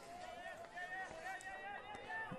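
Faint, distant voices calling out across a sports field, heard as long wavering tones under a low steady background.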